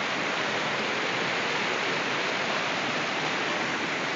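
Whitewater of a fast river rushing over rocks, a steady, even rush with no breaks.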